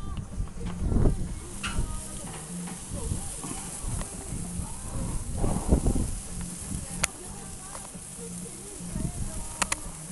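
Indistinct voices over faint background music, with a few sharp clicks in the second half.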